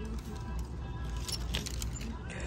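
Plastic clip hangers clicking and sliding on a metal clothes rack as garments are pushed along, with a quick run of clicks about one and a half seconds in, over background music.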